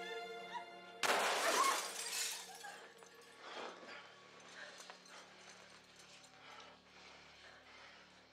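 A single loud revolver gunshot about a second in, with a crackling, shattering tail that fades over about two seconds, followed by fainter scattered noises. A held music chord breaks off at the shot.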